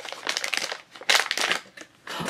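Foil blind-box pouch and clear plastic wrapping crinkling as a toy figure is unwrapped by hand. The crackles come irregularly, with the loudest burst about a second in.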